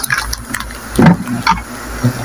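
Rustling and scraping of branches and leaves being pushed aside, with a short louder knock about a second in.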